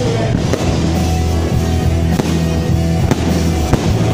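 Fireworks bursting with several sharp bangs over loud music with a steady bass line.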